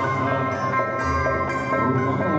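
Traditional Sundanese ceremonial music led by plucked-string instruments, playing steadily.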